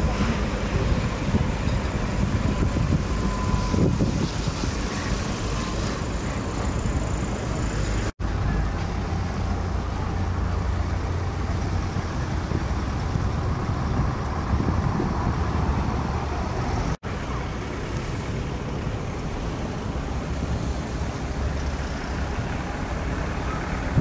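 Street traffic noise: slow-moving cars on a wet, icy road, a steady low rumble of engines and tyres. It drops out briefly twice, about 8 and 17 seconds in.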